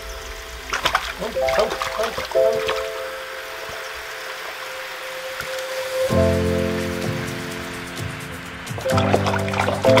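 Tap water running in a steady trickle into a bathroom sink, with a few brief splashes between about one and three seconds in, under background music with long held notes.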